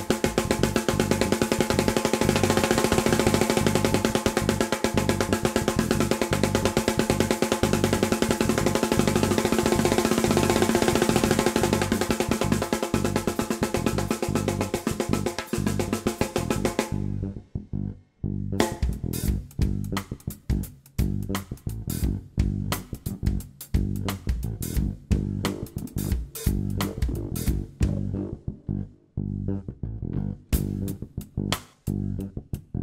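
Jazz-fusion band playing live: drum kit, guitar and bass together at full volume. About halfway through, the high end drops out suddenly, leaving a sparser, lower passage of bass and drum hits.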